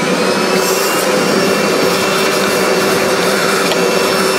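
Shop vacuum running steadily, its hose nozzle sucking the leftover coffee beans out of an espresso grinder's bean hopper.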